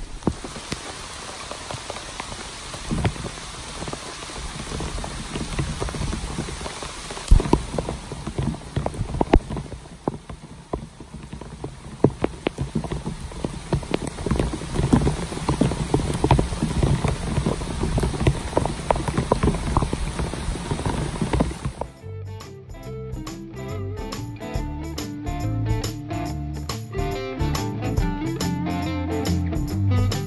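Steady rain falling, with individual drops landing close by as scattered sharp clicks. About twenty seconds in, the rain gives way abruptly to guitar background music with a steady beat.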